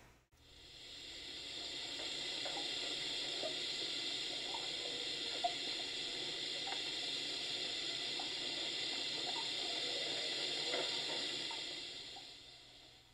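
A steady rushing, hissing noise, like running water, that fades in over the first second or two, holds even, and fades out near the end, with faint small blips scattered underneath.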